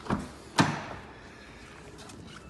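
Car door being opened by its handle: two clicks of the handle and latch about half a second apart, the second louder.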